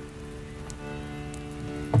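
Accordion holding one steady chord, the notes unchanging, with faint rustling noise over it from the microphone stand being moved.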